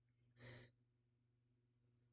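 A single short sigh, one breathy exhale about half a second in, over near silence with a faint steady low hum.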